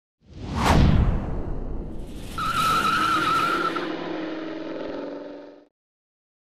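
Opening sound effect: a sweeping whoosh about half a second in, then a wavering high squeal over lower droning tones, fading out just before the end.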